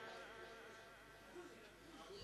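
Near silence between phrases of Quran recitation: the last of the reciter's amplified voice dies away in the room's echo, leaving faint room hiss.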